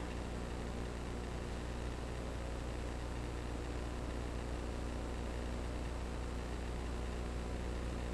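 Steady low hum and hiss of room tone with mains hum, without change or other events.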